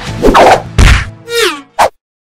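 Cartoon sound effects on an animated title card: two loud whacks in the first second, the second with a heavy thud, then a falling whistle-like glide, and a short sharp hit near the end.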